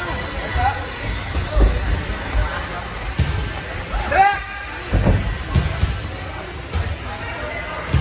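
Dull thumps of sparring on a padded gym mat, with gloved strikes, kicks and feet landing every second or so, and a sharp thump near the end as one sparrer goes down onto the mat. A short high-pitched sound comes about four seconds in.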